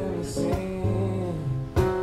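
A man singing a sustained, wavering vocal line over his own acoustic guitar chords, with a fresh chord struck shortly before the end.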